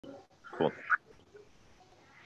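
A single short spoken word, "Cool," then faint room tone.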